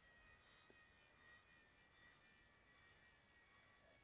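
Near silence: room tone with a faint steady high hum.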